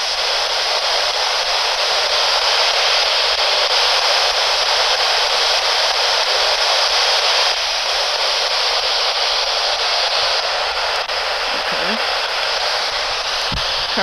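P-SB11 spirit box sweeping through radio stations, giving a loud, steady hiss of static.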